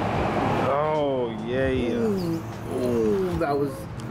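A person's voice making several drawn-out wordless sounds that slide down and back up in pitch, after a short rush of background noise.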